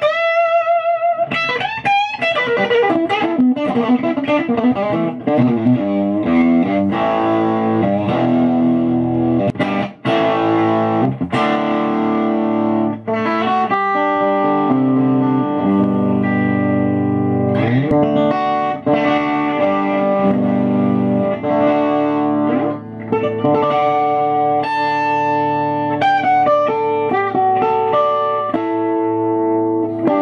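Electric guitar lead playing from a Rushmore Superbird, a neck-through limba-body guitar with Fralin high-output pickups switched to single-coil mode. It opens on a held note with wide vibrato, then moves into runs of notes, bends and sustained notes.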